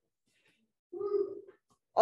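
A single short vocal sound at one steady pitch, about half a second long, about a second in.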